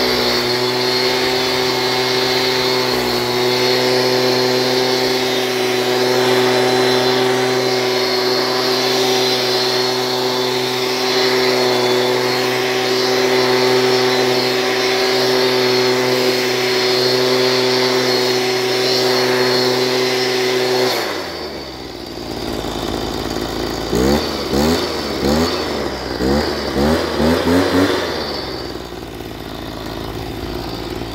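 Echo handheld two-stroke leaf blower running steadily at high throttle, then dropping suddenly to idle about two-thirds of the way through. It is then revved in a quick series of short blips before settling back to idle near the end.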